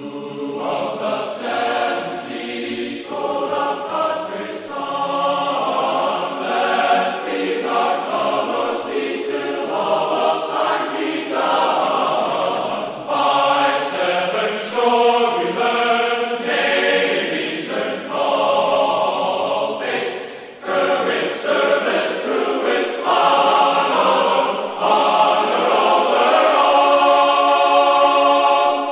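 Soundtrack music: a choir singing sustained chords that change every second or so.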